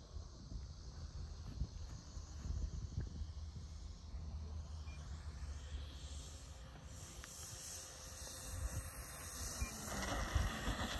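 Twin propellers of a radio-controlled OV-10 Bronco model on final approach and touchdown: a faint hiss that grows brighter and louder over the last few seconds as the plane comes in. A low rumble runs underneath throughout.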